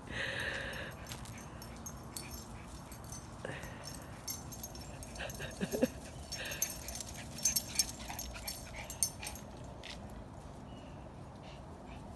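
Two small dogs tussling over a toy: a short high whine at the start, a few breathy dog sounds, and scattered clicks and rustles of paws scrambling over dry leaves and grass.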